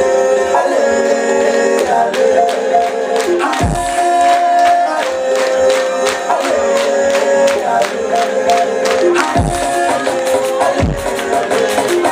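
Loud, fast electronic dance music from a DJ set played over a club sound system: a quick, even percussion pattern under a repeating melody line. Deep bass hits that fall in pitch drop in three times, about 3.5, 9.5 and 11 seconds in.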